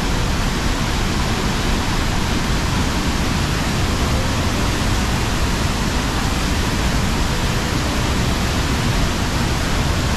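Tegenungan Waterfall in heavy flow, pouring into its plunge pool: a loud, steady rush of falling water.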